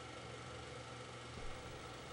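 Faint steady background hiss with a low hum underneath and no distinct events: room tone.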